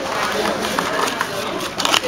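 Indistinct voices of people talking in the background of a restaurant dining room, with a short knock near the end.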